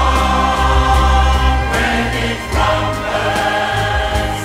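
Mixed choir singing sustained chords with a string orchestra, over a strong, steady low bass.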